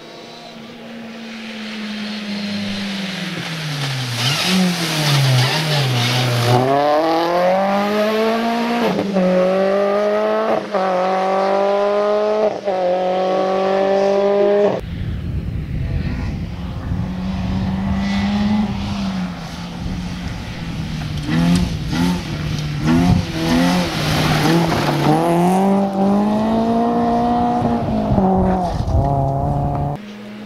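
A rally car's engine comes off the throttle and drops in pitch twice, as for braking and downshifting into a bend. It then accelerates hard through four or five gears, each one a rising sweep that breaks at the upshift. Midway it gives way to a BMW E30 rally car on gravel, its engine revving over a dense rumble of tyres on loose stones.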